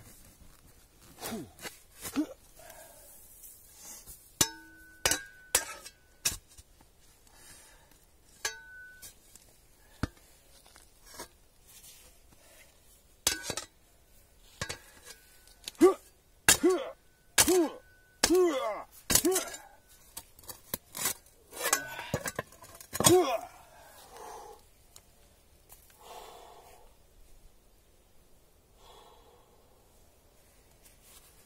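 A steel spade digging and levering against a buried metal safe: repeated clanks and scrapes, some ringing briefly, in clusters, thinning out near the end.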